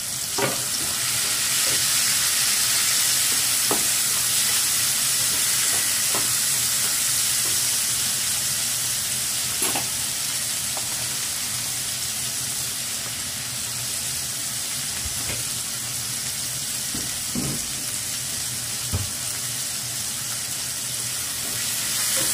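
Chopped tomatoes sizzling as they fry in a skillet with pork and onions in pork fat. The steady sizzle swells about half a second in as the tomatoes hit the pan, with occasional scrapes and taps of a slotted spatula stirring them.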